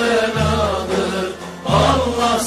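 Music: a Turkish song, a long held chant-like vocal line over a deep bass note that comes in twice.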